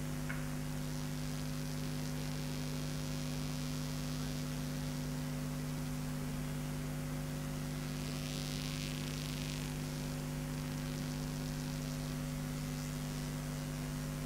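Steady electrical mains hum with a faint hiss, a few fixed low tones held unchanged throughout. A faint brief rustle about eight seconds in.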